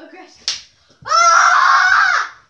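A single sharp smack about half a second in, then a child's long, loud yell lasting about a second and a half, its pitch falling as it ends.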